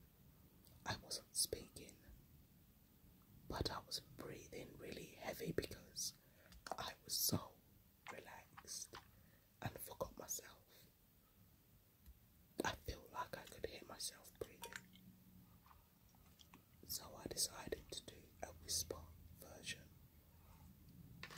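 Close-miked clicks and taps of fingernails and a metal cuticle tool during soak-off nail removal, coming in scattered clusters with quiet gaps, under soft whispering.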